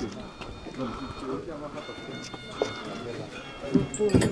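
Indistinct voices of several people talking in the background, with faint steady high tones joining about halfway through.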